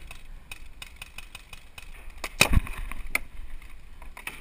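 Paintball markers firing across the field: scattered sharp pops, several a second, with a louder knock about two and a half seconds in.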